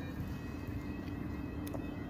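Steady low outdoor background rumble with a faint, even humming tone and a few faint clicks; no distinct event stands out.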